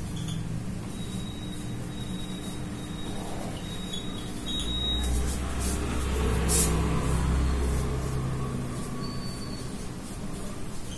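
Marker pen writing on a whiteboard, the tip giving thin high squeaks for the first few seconds, over a steady low hum. A low rumble swells in the middle and fades.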